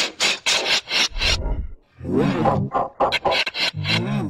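Heavily distorted, effect-processed voice audio: pitched voice-like sounds chopped by short harsh noisy bursts.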